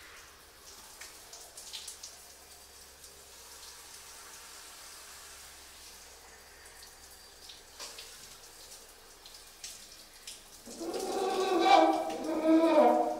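Faint small clicks and handling noises, then a little before the end a trumpet starts playing, a loud line of changing notes, in a small tiled bathroom.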